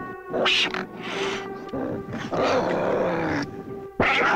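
Horror film sound track: a held, droning music tone under three harsh, animal-like creature cries, each up to about a second long.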